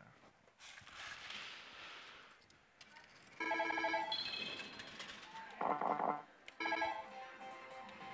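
Electronic sound effects from Millionaire God: Kamigami no Gaisen pachislot machines: a soft hissing swell, then from about three and a half seconds in a run of bright electronic chimes and beeps in short blocks.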